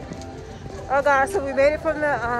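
Speech: a high-pitched voice talking, starting about a second in, over low outdoor background noise.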